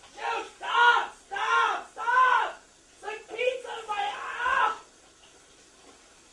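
A person screaming in a quick series of short, high-pitched cries that stop about five seconds in.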